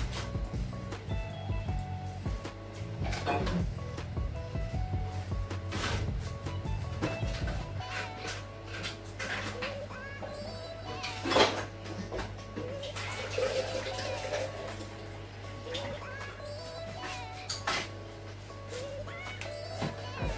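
Background music plays throughout, with scattered clicks and knocks of kitchen handling. About 13 seconds in, water pours for a couple of seconds, covering dried veggie chunks to soak them.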